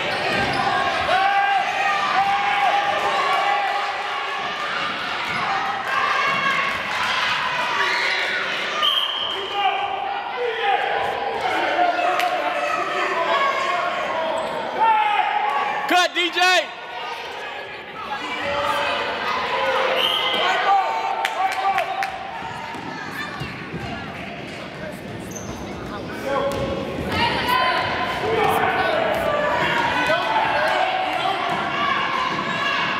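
Basketball bouncing on a hardwood gym floor, with scattered sharp strikes, against a steady mix of shouting voices from players and spectators, all echoing in a large gym. A loud, high-pitched wavering cry rises above the rest about halfway through.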